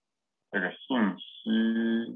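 A man's voice: two short syllables falling in pitch, then one long, drawn-out syllable held on a steady pitch.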